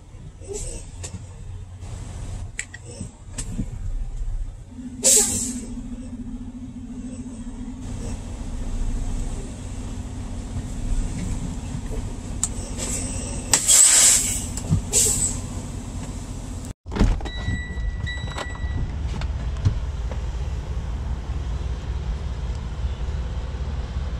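Semi truck's diesel engine running low and steady as the rig creeps across the yard, with a few short, loud hissing bursts, the biggest about 5 and 14 seconds in. The sound drops out for an instant about two-thirds of the way through.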